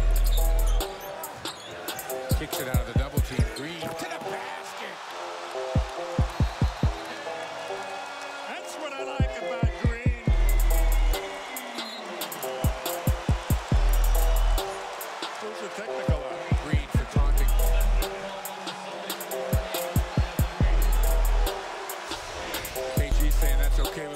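Background music: a beat with a deep bass hit about every three and a half seconds and quick runs of drum hits in between.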